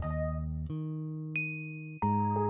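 Background music: held keyboard-like chords, with a change of chord about a third of the way in and a single high chime-like note near the end.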